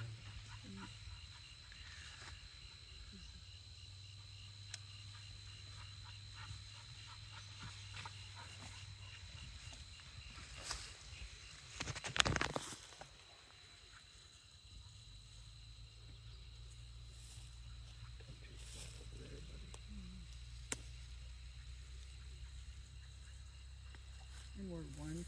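Quiet open-meadow ambience: a faint steady high insect chirping over a low rumble, with soft rustling through tall grass. About twelve seconds in there is a brief, louder rustle of brush.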